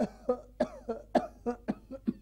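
A puppeteer's voice giving an old-man puppet a rapid run of short coughs, about eight in two seconds.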